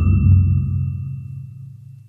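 A deep low tone from the soundtrack, hit suddenly and fading away over about two seconds, with a faint high ringing tone above it.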